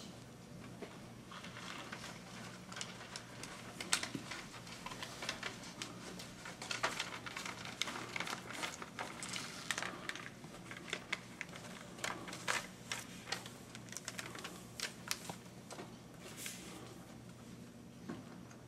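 Faint, scattered small clicks, taps and rustles of pens and paper in a quiet meeting room while judges mark their ballots, over a low steady electrical hum.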